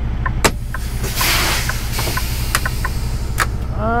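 Kenworth semi-truck's diesel idling with a steady low hum while the parking brake knobs are pulled: a loud hiss of air about a second in, lasting about a second, as the spring brakes set. A few sharp clicks come before and after it.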